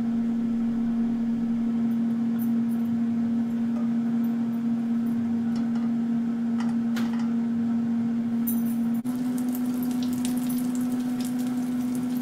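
Butter melting and frying in hot oil in a nonstick frying pan over a gas burner, with a faint sizzle that turns more crackly in the last few seconds, over a steady low hum. A couple of light taps from the spatula come around the middle.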